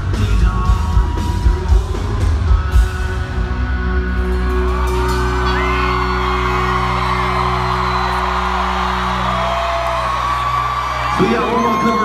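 Live band music at a concert with a crowd cheering: sharp drum hits for the first few seconds, then a long held chord while the crowd screams and whoops, and a voice comes in near the end.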